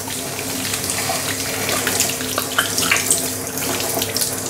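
Kitchen tap running onto hands over a stainless steel sink as soap lather is rinsed off: a steady rush of water with small splashes.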